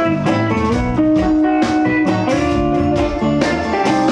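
Live rock band playing an instrumental passage: electric guitar lines over a steady drum beat and bass.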